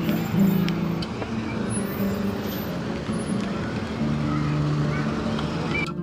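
Outdoor city ambience: a steady wash of road traffic with people's voices in the background, and some held low musical notes running under it.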